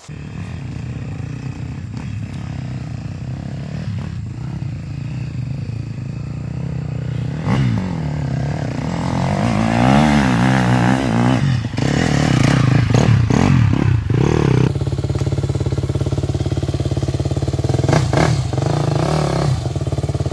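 Off-road trail motorcycle engines running throughout. One bike revs in rising and falling surges as it climbs the dirt track and grows louder, at its loudest in the middle, with a few short knocks.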